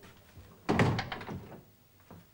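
A door being shut: a faint knock, then one solid thud a little under a second in that dies away quickly.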